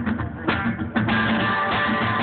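Live band over a festival PA, heard from within the crowd, starting a song: three separate guitar strums about half a second apart, then the band plays on steadily from about a second in.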